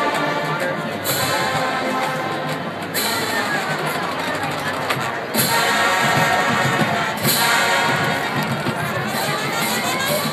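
A university marching band playing on a football field, heard from the stadium stands. Sustained chords carry throughout, with strong accents about one, five and seven seconds in.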